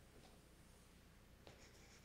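Near silence: room tone with faint rustling and a soft click about one and a half seconds in.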